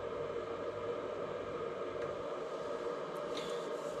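Bench power supply running under a charging load of about 5 to 6 amps: a steady hum with faint steady tones.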